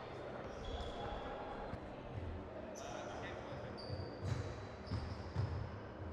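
Sports hall ambience during badminton play: short high squeaks and low thuds from players moving on the court floor, with faint voices in the hall.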